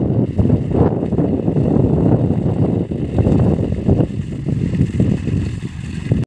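Wind buffeting the microphone in irregular gusts, a loud low rumble that swells and drops.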